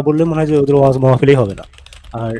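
A man's voice holding one long drawn-out sound for about a second and a half. It falls in pitch as it stops, and a few faint clicks follow near the end.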